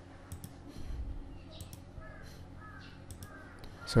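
A few faint computer-mouse clicks, and a bird calling three times in the background in the second half, each call short and curving down in pitch, over a faint steady hum.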